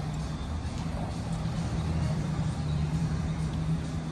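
Harley-Davidson Fat Bob's Milwaukee-Eight 114 V-twin idling steadily.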